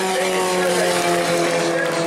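Stock car engines on the track, running steadily with their pitch slowly falling as the cars ease off after the checkered flag. Indistinct voices sound faintly over them.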